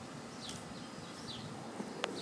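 Quiet outdoor background with two short, faint bird chirps.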